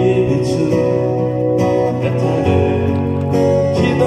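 Two acoustic guitars playing an instrumental passage of a song, amplified through a PA.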